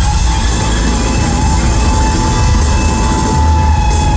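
Live band music through a concert PA: an electric guitar holds one long sustained high note over a heavy, steady bass.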